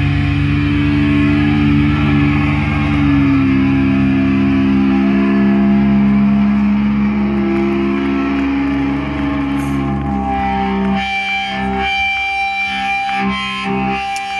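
Live electric guitar and bass holding long, distorted chords that ring out. About ten seconds in, the sound thins to sparser picked guitar notes higher up, with little low end.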